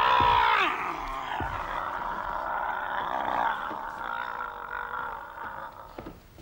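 A person's long drawn-out vocal cry, loudest in the first second and then slowly fading away over about five seconds.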